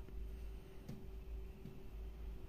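Quiet room tone: a faint steady hum with low background rumble and one faint tick about a second in. The semolina being poured makes no clear sound of its own.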